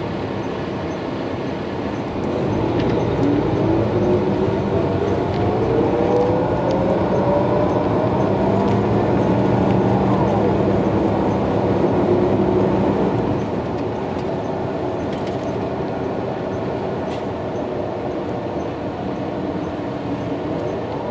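Cabin sound of a 2017 MCI J4500 coach pulling away from a stop, its Detroit Diesel DD13 engine and Allison B500 automatic transmission getting louder about two seconds in. A whine rises in pitch as the coach gathers speed, shifts near the middle, and settles into a quieter, steady cruise from about thirteen seconds in.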